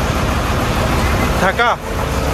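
Truck engine idling with a steady low rumble; a voice speaks briefly near the end.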